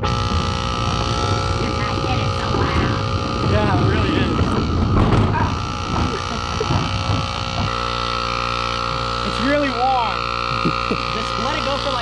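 Small portable air compressor running with a steady hum, inflating a car tyre that had dropped to about 5 psi.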